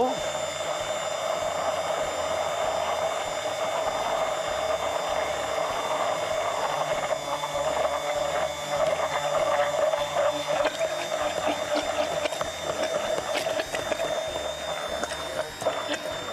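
Hand-held immersion blender running steadily with a high motor whine while it is moved up and down through egg, garlic, vinegar and olive oil, emulsifying them into mayonnaise.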